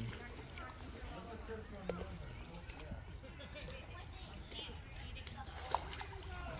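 Faint background chatter of people's voices, with two short sharp clicks, one about two seconds in and one near the end.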